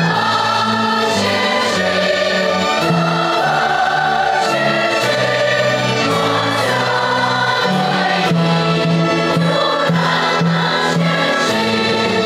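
Large massed choir of children and adult voices singing in long held phrases, accompanied by a symphony orchestra.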